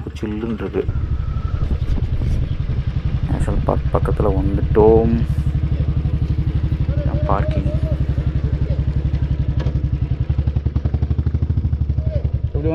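Motorcycle engine running at low speed with a steady, regular low pulsing.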